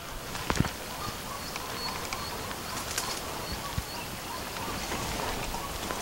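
Outdoor field ambience: a steady hiss with a few soft knocks and faint, short, high chirps repeating through it.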